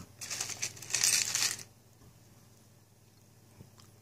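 Rustling, scraping handling noise from hands moving things on the workbench and handling the camera, lasting about a second and a half. After that, only a faint steady low hum remains, with one small click near the end.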